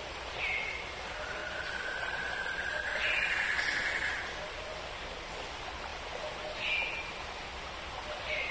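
Outdoor ambience of a steady rushing hiss with birds calling: a short, slightly falling call about half a second in and again near the end. A longer whistled note runs from about a second in and steps up in pitch near the middle.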